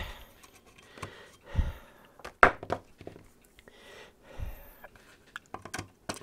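Small metal clicks and knocks of pliers working a nut and star lockwasher off a screw on a thin aluminium plate. The knocks are scattered, the loudest about two and a half seconds in, with a quick run of small clicks near the end.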